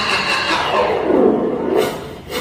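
A drawn-out roar-like sound effect that falls steeply in pitch near the end and cuts off abruptly.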